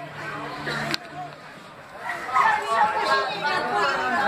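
Several people talking and calling out over one another, growing louder about halfway in. A low steady tone holds under the first second and ends at a sharp click.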